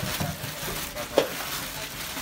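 Rustling and crinkling of a woven plastic sack and plastic-wrapped parcels as they are pushed into it, with one short sharp sound a little past halfway.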